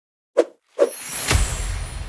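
Logo sting sound effect: two quick plops, then a swelling whoosh with a low rumble and a soft hit about two-thirds of the way in.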